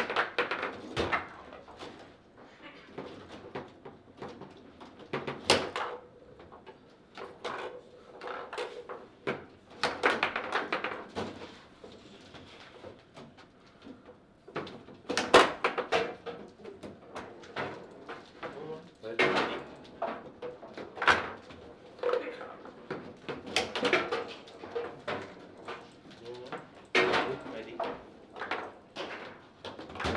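Table-football play: the ball is struck by the plastic player figures and the rods knock and slide in the table, giving irregular sharp clacks and knocks in a small room. The loudest hit comes about halfway through.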